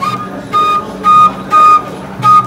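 Background music: a high melody repeating one held note several times in short, even strokes.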